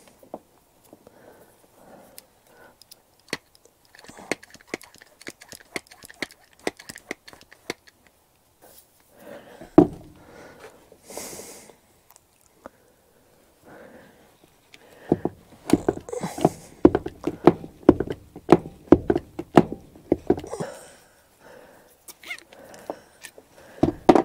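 Handheld hydraulic lug crimper being pumped to crimp a lug onto a power cable, with scattered clicks and knocks of handling and a dense run of louder clicks and knocks in the second half as the handles are worked.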